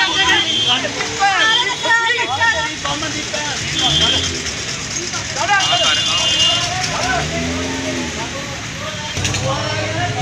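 Raised voices shouting and yelling in a street scuffle, with road traffic going by.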